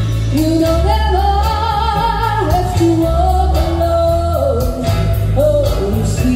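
A woman singing long, wavering held notes over musical accompaniment with bass and drums, in a live soul-ballad performance.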